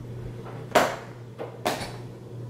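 A notepad and pen set down on a wooden table: two short knocks, the first about three quarters of a second in and the second near the end.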